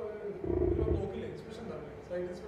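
A faint, muffled voice speaking off-microphone, well below the level of the amplified lecture around it.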